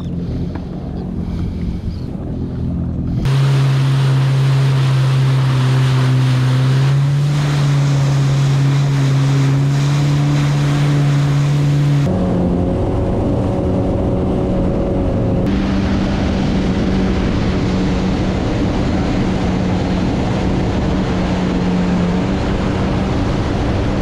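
Jet ski engine running at cruising speed, with water rushing and splashing off the hull and wind on the microphone. It is quieter for the first few seconds, then loud and steady from about three seconds in, its note stepping higher about halfway through.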